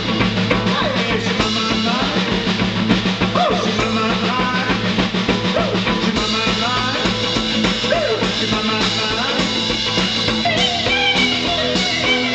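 Live rock band playing: an archtop hollow-body electric guitar strummed through an amplifier over a steady drum-kit beat.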